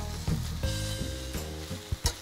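Background music over shredded cabbage sizzling in a stainless steel sauté pan as it is stirred with a spatula.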